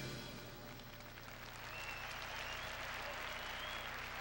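The band's last chord dies away and a concert audience applauds, fairly faint and even.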